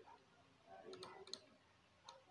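Two faint, sharp computer mouse clicks about a second in, against near silence.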